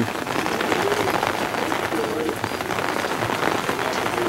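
Steady rain falling, a dense patter of small drops hitting the surfaces around the pigeon loft.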